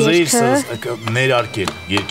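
A kitchen knife chopping through an orange bell pepper onto a cutting board, a few quick cuts, under a man's voice talking.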